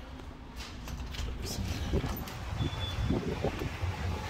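Low rumble of wind and handling noise on a phone microphone as it is carried outdoors, with a few light clicks and knocks from walking.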